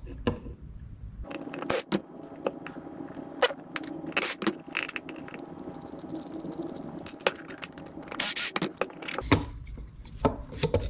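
Small plastic and metal parts of a car distributor's igniter module clicking, scraping and rattling as they are worked loose by hand, in irregular short bursts.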